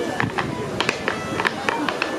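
Wooden-soled clogs striking a wooden dance board in step clog dancing: a quick, uneven run of sharp clicks and taps.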